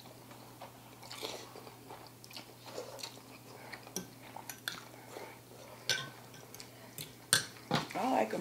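Close, quiet eating sounds: instant ramen noodles being slurped and chewed, with a few short sharp clicks of forks against ceramic bowls.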